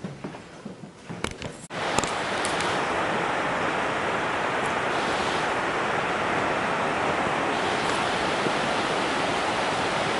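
Steady, even rush of flowing water, a river or stream in the valley, starting suddenly about two seconds in. Before it there is only quiet room tone with a few soft clicks.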